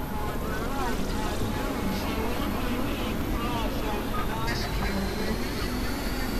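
Experimental industrial synthesizer noise music: a dense, rumbling drone with short warbling pitch glides over it, and a thin high tone entering about four and a half seconds in.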